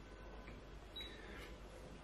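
Quiet room tone with a steady low hum and two faint small clicks, about half a second and one second in.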